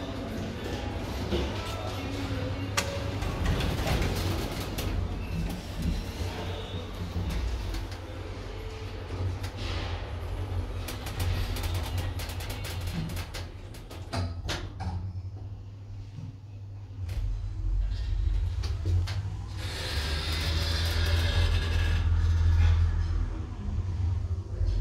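Hütter hydraulic passenger lift: a few sharp clicks as the sliding car doors shut about halfway through, then the low hum of the hydraulic drive as the car rises, growing louder near the end. Background music plays over it.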